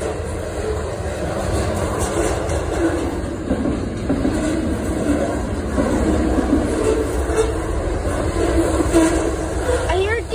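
CSX manifest freight train's cars rolling past: a steady rumble with wheel clatter, and wavering tones joining about three and a half seconds in.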